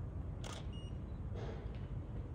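Camera shutter clicks: one short click about half a second in and a fainter one around a second and a half, over a steady low room rumble.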